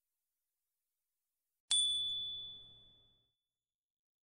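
A single bright electronic ding about two seconds in, one clear high tone ringing out and fading over about a second, after digital silence. It is the chime marking the reveal of the correct answers.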